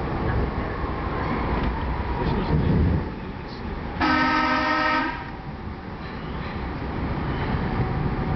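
A PATCO rapid-transit train running on the rails with a steady low rumble, its horn sounding one blast about a second long about halfway through as it enters the tunnel.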